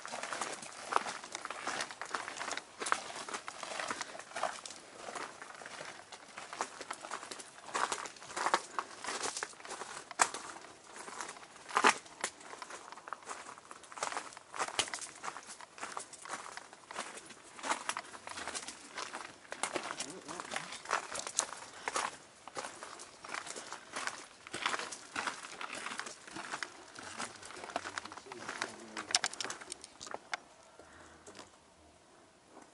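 Footsteps and rustling of people walking over rough ground in the dark: a steady run of irregular crunches and clicks, with handling noise mixed in.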